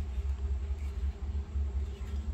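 A steady low rumble of background noise, with no clear event above it.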